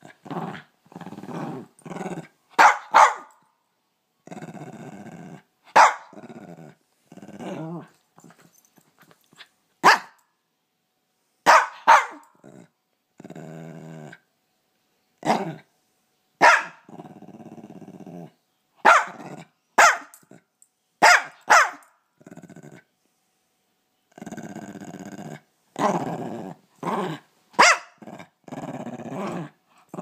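Small shaggy white dog barking sharply every second or two, between drawn-out growls of about a second each. This is an excited welcome-home greeting, not aggression.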